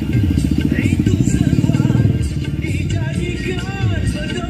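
Motorcycle engine running close by, a fast pulsing sound strongest in the first two seconds, over music with a singing voice.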